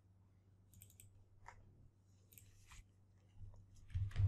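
Faint computer mouse clicks, a few scattered through, over near-silent room tone with a steady low hum.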